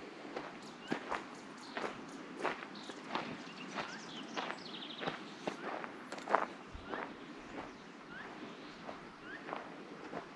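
Footsteps walking on dry dirt ground, a steady pace of about one and a half steps a second.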